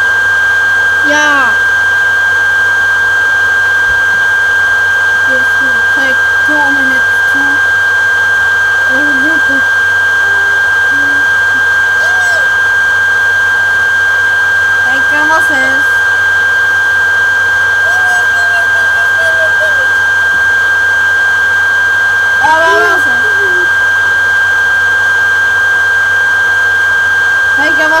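A loud, steady high-pitched electronic tone over a constant hiss, unbroken throughout, with brief fragments of a voice surfacing every few seconds.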